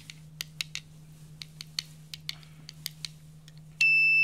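Light clicks and taps as the breadboard circuit with its accelerometer is jostled by hand. Near the end an electronic buzzer starts a loud, steady high-pitched tone: the crash alert, set off by the jolt to the accelerometer.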